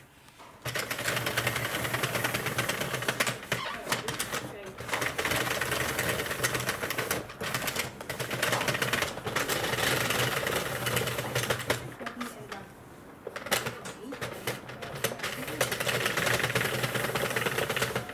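Sentro knitting machine being hand-cranked: its plastic needles clatter rapidly as the ring turns. It stops briefly about two-thirds of the way through, then carries on.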